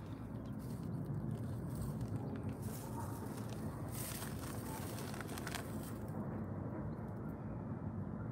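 Steady low outdoor rumble, the background of a handheld recording outdoors, with a few faint rustles or scuffs about three to five and a half seconds in.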